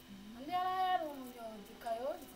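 One long voice-like call lasting about a second and a half, rising in pitch, held, then sliding down, followed near the end by a shorter rising call.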